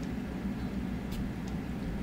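Steady low hum of a desktop CO2 laser engraver and its water chiller running, with a faint click a little over a second in as the test button is pressed to pulse the laser.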